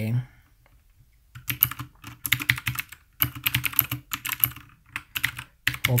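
Typing on a computer keyboard: several quick runs of key clicks with short pauses between them, starting a little over a second in.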